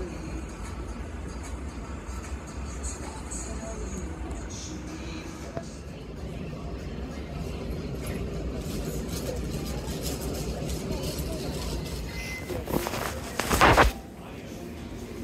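Airport gate-area background: a steady low hum with indistinct voices and faint music, then a loud, brief rustling noise in the last second or so.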